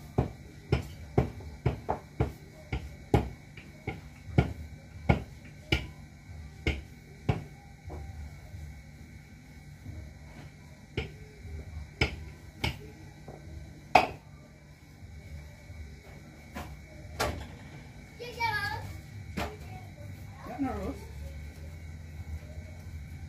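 Rolling pin knocking on the counter as roti dough is rolled out thin: sharp knocks about twice a second for the first several seconds, then sparser.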